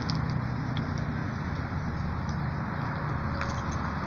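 Steady road traffic noise from passing cars, an even low rumble and hiss with no single event standing out.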